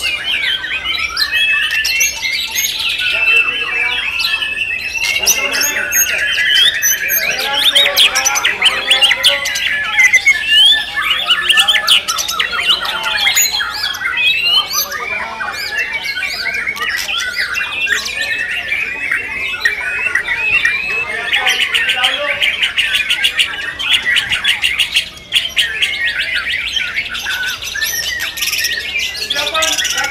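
Caged white-rumped shamas (murai batu) singing a continuous, varied stream of rapid whistles and chattering notes, with many songs overlapping.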